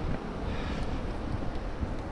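Wind buffeting the camera's microphone: an uneven low rumble that rises and falls in gusts.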